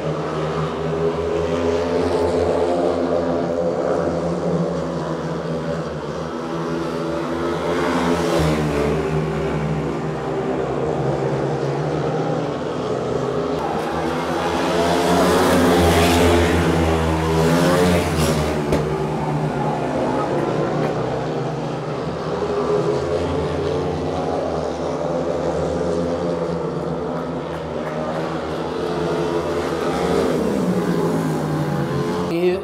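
Several speedway bikes racing around the track, their 500 cc single-cylinder methanol engines rising and falling in pitch as they accelerate down the straights and ease into the bends. The engines are loudest about halfway through, as the pack passes close by.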